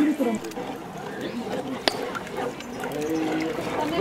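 Several people talking quietly in the background, with a single sharp click about two seconds in.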